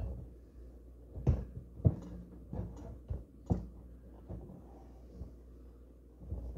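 Muffled handling of a champagne bottle wrapped in a pillow as the cork is worked loose: a few soft thumps and fabric rustles, the loudest about two seconds in.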